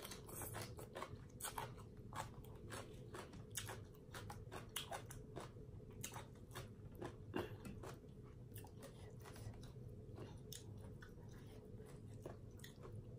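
Close-up chewing and biting of papaya salad with raw salmon and rice noodles: a run of wet mouth clicks and crunches, over a low steady hum.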